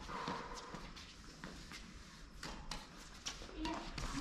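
Badminton rackets striking the shuttlecock back and forth in a doubles rally: sharp clicks at irregular intervals, mixed with players' footsteps on the court.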